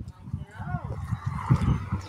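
A person speaking quietly, away from the microphone, with a few low thumps underneath about one and a half seconds in.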